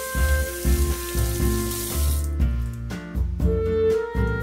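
Water wrung from a sponge splashing into a stainless steel sink drain, stopping about two seconds in, over background music.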